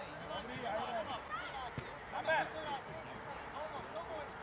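Young children's high voices shouting and calling out during a small-sided football game, loudest a little after two seconds in, with a single thud of a kicked ball just before that.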